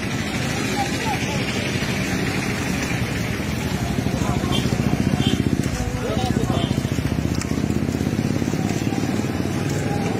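Street sound of a group walking: indistinct voices over a motor vehicle's engine running close by, louder in the middle.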